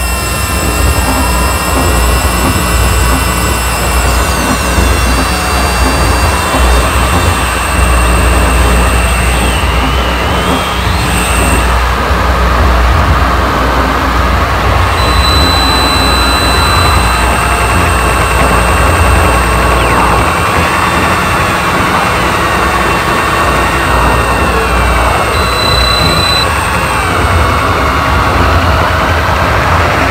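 Harsh noise music: a loud, dense wall of electronic noise that cuts in suddenly, with a heavy low rumble under a thick hiss, thin steady high tones over it, and a few pitches sliding downward about four seconds in.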